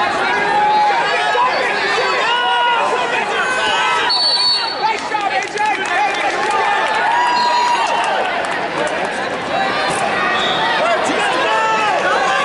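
Many overlapping voices of coaches and spectators shouting and calling out across an arena. A brief high whistle sounds about four seconds in.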